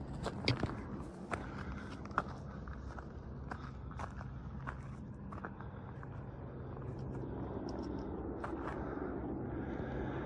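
Footsteps and scuffing on a steep grassy, rocky mountain trail: a few irregular scrapes and clicks, more in the first half, over a steady low background hum.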